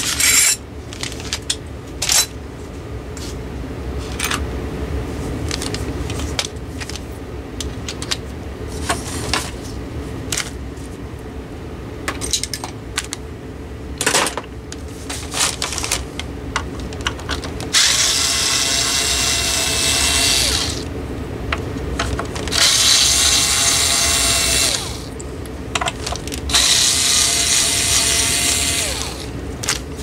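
Small cordless screwdriver whirring in three runs of two to three seconds each in the second half, taking the screws out of ceiling fan blades. Before that, scattered clicks and knocks of screws and small parts being handled on the workbench.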